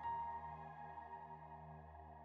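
Soft, quiet ambient meditation music: a steady low drone under held, slowly fading higher notes.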